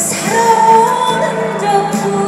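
Female trot singer singing live into a microphone over music accompaniment, holding one long note in the first half.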